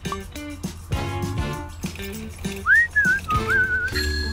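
Background music with a steady beat. Near the end, a short whistle swoops upward and then wavers up and down for about a second.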